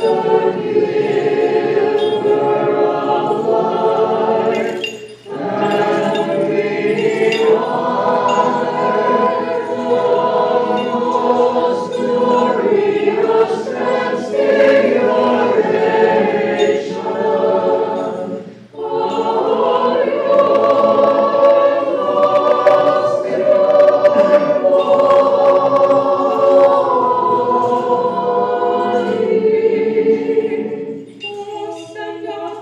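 A choir singing unaccompanied Orthodox liturgical chant in sustained, held phrases. There are two short breaks between phrases, about five seconds in and again near nineteen seconds.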